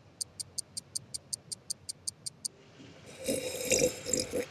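A quick run of about a dozen high, even ticks, some five or six a second, then a swelling hiss with a low hum near the end: an edited-in suspense sound effect held over a dramatic pause.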